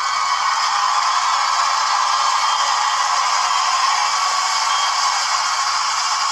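Loud, steady static hiss with no tone or rhythm in it.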